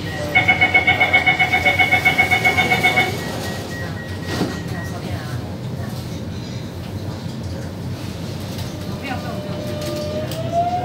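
Door-closing warning of an SBS Transit C751C metro train: a rapid beeping, about seven beeps a second, for about three seconds. The doors shut with a knock about four seconds in, and the car's steady hum carries on.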